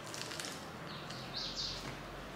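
Biting into and chewing a crisp flaky pastry: short, crackly crunches, a few just after the start and the loudest about one and a half seconds in.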